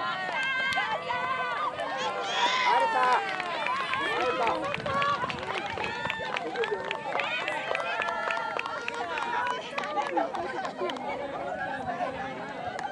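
Many children's voices talking and calling out at once, overlapping and high-pitched.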